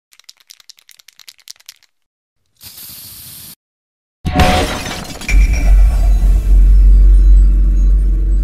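Intro logo sting: about two seconds of rapid ticking, a short hiss, then a sudden crash like shattering and, a second later, a deep bass hit with music ringing on.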